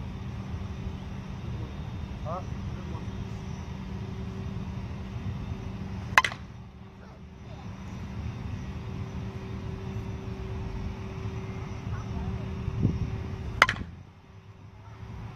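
Two slowpitch softballs struck by a brand-new Miken Freak Platinum 12 composite bat: two sharp cracks about seven seconds apart, the second just before the end. Under them runs a steady low background rumble.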